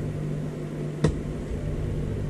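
Steady low room hum with one sharp click about a second in, from a hand plastisol injector worked against an aluminium bait mold while it is being filled.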